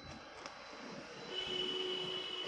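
Quiet room tone, then a faint, steady, high whistle-like tone sets in about halfway through and holds.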